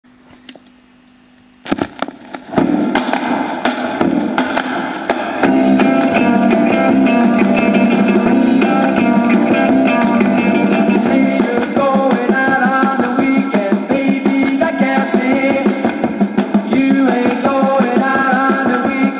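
A 1960s UK beat single played from a 7-inch vinyl record on a turntable: under two seconds of faint groove noise and clicks, then the band starts about two and a half seconds in and gets fuller and louder about five seconds in.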